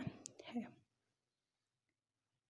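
A woman's voice trails off at the end of a spoken word in the first second, then near silence.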